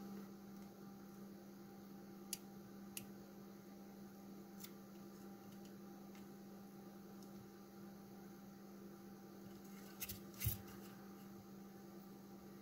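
Faint steady electrical hum with a few soft clicks scattered through it, the small handling noises of soldering work.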